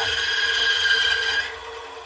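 Bandsaw cutting through a thick Spanish cedar blank: a steady high whine from the blade in the wood over the saw's running hum. The cutting sound stops about one and a half seconds in as the cut finishes, and the saw keeps running.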